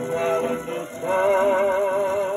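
Dance-band orchestra music from a 78 rpm record playing on a Westminster record player. About a second in, a long note with strong vibrato comes in over the band.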